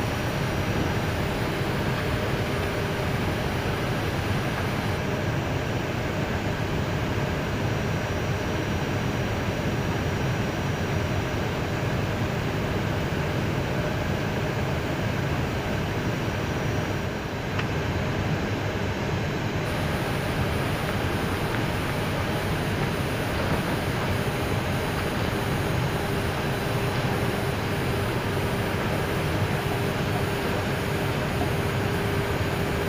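Steady cockpit noise of an Airbus A319 taxiing at low speed: jet engines at taxi idle and air-conditioning airflow heard from inside the flight deck, even and unbroken.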